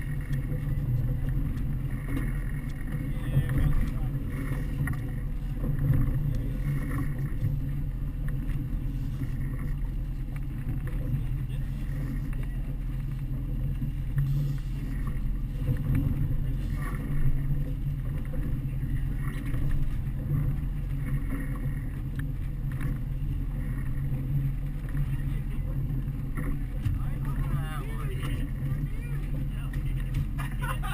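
Twin Suzuki outboard motors running steadily under way, a continuous low rumble mixed with the wash of the boat's wake.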